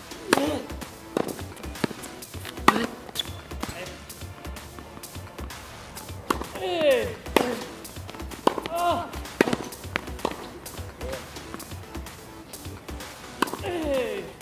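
Tennis ball struck by rackets and bouncing on a hard court during a rally, a sharp knock every second or so. Short squeals that bend in pitch come in between, a couple of times in the middle and again near the end.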